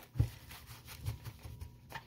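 Faint handling of a tarot card deck: a soft knock just after the start, then scattered light taps and rustles of the cards in the hands.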